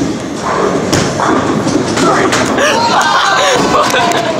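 Heavy thuds and knocks on the wooden floor of a bowling lane as a bowling ball is released, loud and close because they are picked up through the floor, with a voice shouting in the second half.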